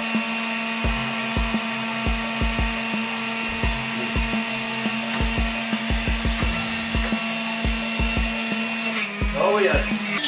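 Electric juicer running, a steady motor hum with a high whine, as apple pieces are pushed down its chute, with irregular low thuds two or three times a second. The whine cuts off about nine seconds in.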